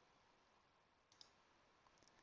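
Near silence, with a faint double click of a computer mouse about a second in and a fainter tick near the end.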